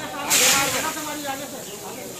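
Water thrown from a bucket onto a burning car: a sudden loud splash and hiss about a third of a second in, fading over about a second.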